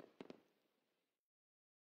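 Near silence as the orchestral background music ends. Two faint clicks come just after the start, and then there is dead digital silence.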